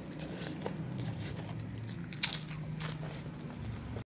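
Close-up chewing of a mouthful of rice and water spinach, wet mouth sounds with scattered crisp crunches, the sharpest about two seconds in, over a steady low hum.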